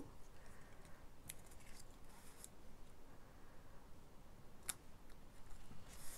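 Quiet handling of patterned paper and foam adhesive strips: a few faint rustles and small clicks, the sharpest about three-quarters of the way through.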